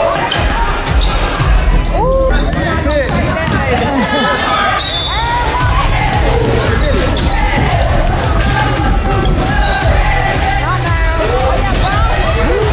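A basketball being dribbled on a hardwood gym floor, with sneakers squeaking in short chirps and voices from players and crowd in a large hall, over music with a steady bass line.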